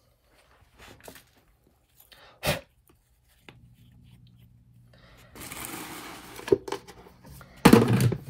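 Light clicks and a sharp tap of plastic cups and a silicone mold being handled on a workbench, with a low steady hum starting about halfway and a soft rushing noise after it; a run of loud knocks comes near the end.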